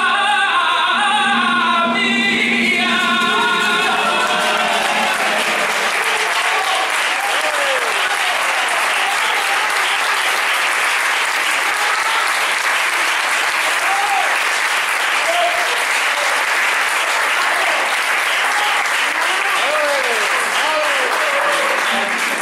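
Male flamenco singer ending a milonga on a long-held note over flamenco guitar. About three seconds in, the audience breaks into sustained applause, with scattered shouts from the crowd over the clapping.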